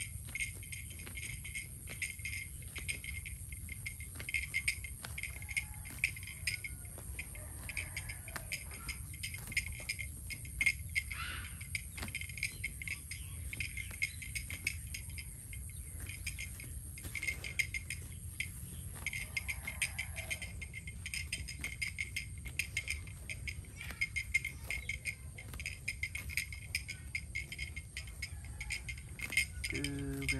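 A steady, pulsing chorus of insects with a high continuous whine, over the crackling and tearing of a cow cropping grass close by.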